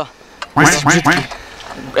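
A young man laughing in several short bursts about half a second in, then dying away.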